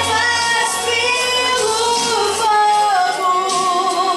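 A woman singing a slow worship song into a microphone with long held notes, over instrumental backing whose low bass note drops out about halfway through.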